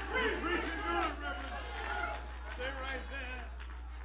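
Congregation members calling out, several voices overlapping, with a man shouting and clapping, over a steady low hum. The voices die down near the end.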